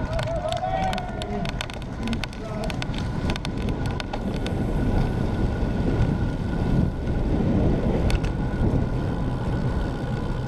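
Wind rushing over an action camera's microphone on a road bike at racing speed, with tyre and road noise.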